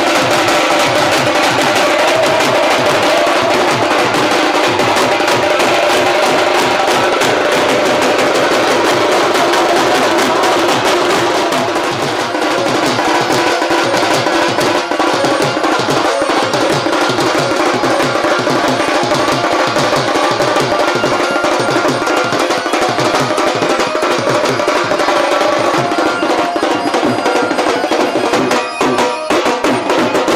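Loud, drum-led music with a fast, steady beat of percussion strokes.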